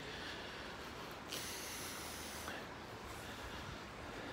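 Quiet, steady room noise, with a soft hiss lasting about a second that starts a little over a second in.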